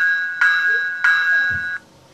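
Diesel locomotive bell played by an Athearn Genesis HO model locomotive's sound decoder through its small speaker, ringing in steady strikes about two-thirds of a second apart. The ringing stops shortly before the end.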